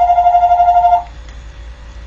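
An electronic warbling tone: one steady pitch with a fast flutter, which cuts off sharply about a second in.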